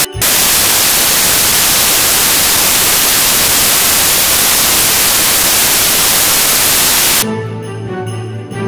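Loud, steady static hiss like white noise, with a brief dropout just at the start. It cuts off suddenly about seven seconds in, giving way to background Christmas music.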